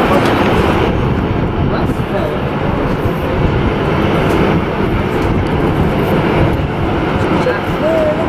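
Boeing 737-800 jet engines (CFM56-7B) running at taxi power as the airliner rolls past, a steady rushing noise.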